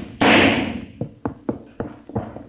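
Radio-drama sound effects: a loud gunshot whose echo dies away over about half a second, just after the start, followed by a quick run of sharp knocks, about three or four a second.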